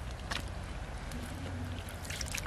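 Low steady rumble of wind on the microphone, with a brief faint wet squelch of mud about a third of a second in as a mud-caked freshwater mussel is handled.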